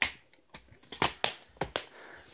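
Plastic DVD cases being handled: sharp clicks and snaps of the cases opening, closing and knocking together, one at the start and a quick run of four about a second in.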